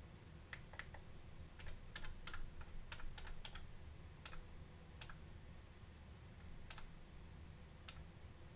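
Quiet, irregular clicks of buttons being pressed on a hardware sequencer unit, with a quick run of presses about two seconds in, over a faint low hum.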